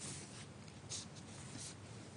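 Faint indoor background noise, with two brief high rustling hisses, one about a second in and one shortly after.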